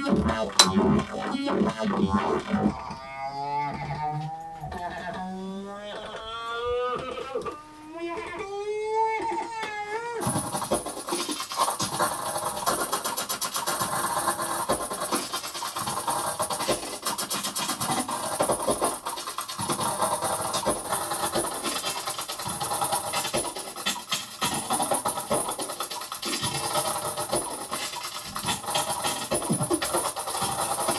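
Modular synthesizer sounds: electronic tones gliding upward in repeated wavering sweeps, then, about ten seconds in, an abrupt switch to a dense texture of rapid clicks and hiss.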